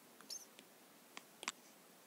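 A few faint, light taps of an Apple Pencil tip on an iPad's glass screen, the clearest two close together about a second and a half in, over near silence.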